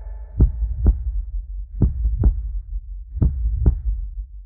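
Slow heartbeat sound effect: three double thumps, lub-dub, about a second and a half apart, over a low steady drone.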